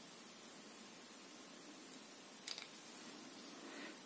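Near-silent room tone with a couple of faint short clicks about two and a half seconds in, from a small plastic nozzle cap being handled and picked clean of dried latex with a wooden cotton-swab stick.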